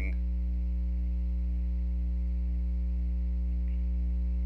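Steady electrical mains hum in the recording, caused by the laptop being plugged into its charger: a loud, unchanging low drone with a stack of evenly spaced overtones above it.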